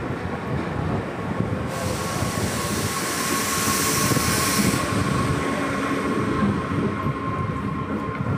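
Electric passenger multiple-unit train running steady, with a continuous rumble and a steady thin whine. A burst of hissing lasts about three seconds in the middle.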